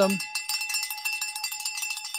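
A steady, bright chime of several high tones sounding together, with a fast, even flutter through it. It has no low notes and continues unbroken until speech resumes.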